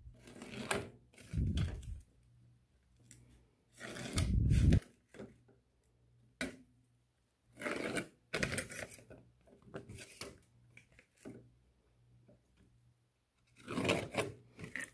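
Marker pen drawing lines along the steel rule of a combination square on embossed sheet metal, in short strokes with gaps between them, with scrapes and knocks as the square is slid along the sheet; the loudest scrape comes a few seconds in.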